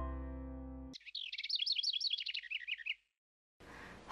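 A last note of background music fades out, then about two seconds of rapid, high twittering bird chirps, ending suddenly.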